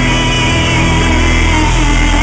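Live country band music: a woman sings a long held line over steady guitar accompaniment, her voice sliding in pitch near the end.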